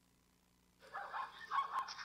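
Zebra's barking call played through a phone's speaker: a run of short, yelping barks starting about a second in.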